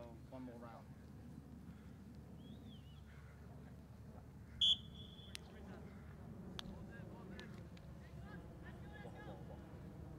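A referee's whistle gives one short, sharp, high blast about halfway through, over faint distant shouts from players.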